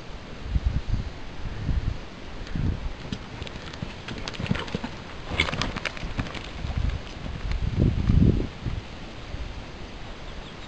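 A horse's hoofbeats on a soft arena surface as it canters past: irregular dull thuds, loudest about eight seconds in, with a scatter of light sharp clicks midway.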